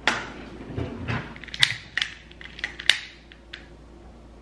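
A utility click lighter's trigger clicked over and over, a run of irregular sharp clicks with two loudest near the middle and end, while it is brought to a jar candle's wick; a soft low knock about a second in.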